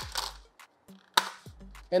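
Brief handling noises from a screen-protector kit's packaging over faint background music: a soft rustle at the start, then a single sharp crack a little over a second in.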